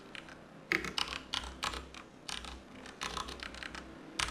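Computer keyboard being typed on, in quick runs of keystrokes separated by short pauses.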